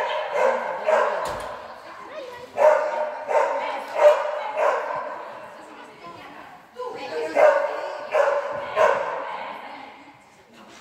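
Dog barking excitedly in three runs of several sharp barks, each bark echoing in a large hall.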